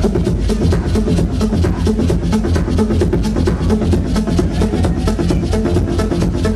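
Live electronic dance music played loud through a club sound system, with a heavy, pulsing bass drum and a fast, even run of clicking percussion on top.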